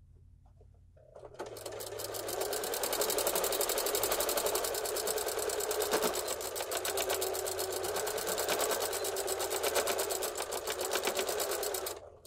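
Necchi electric sewing machine starting about a second in, picking up speed, then stitching steadily through layered fabric with a rapid, even needle rhythm, and stopping just at the end.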